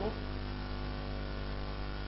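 Steady electrical mains hum: a low drone with a ladder of higher overtones, unchanging in level.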